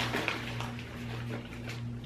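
Faint rustling of a foil snack bag being handled over a steady low electrical hum.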